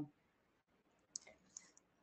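Near silence, with a few faint short clicks a little past the middle.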